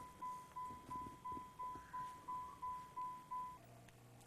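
Car's electronic warning chime, a single steady beep repeating about three times a second, the kind sounded when a door is open with the key in the ignition. It stops about three and a half seconds in.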